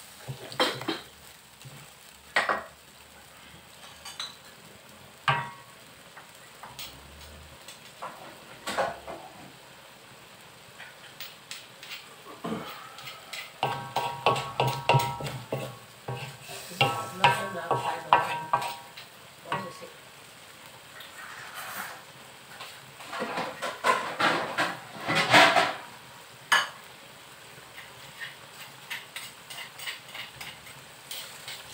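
A spatula stirring and scraping a thick beef curry around a wok, in irregular scrapes and knocks that come in busier runs, with the curry sizzling in the pan.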